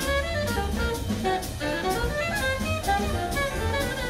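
Big band jazz: an alto saxophone plays a bebop line over upright bass, piano and drum kit with cymbals.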